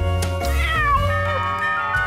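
A cartoon kitten's meow: one call, about half a second in, that falls in pitch, over the song's backing music.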